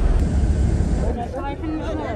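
A low rumble that eases off about a second in, with other people's voices in the background after that.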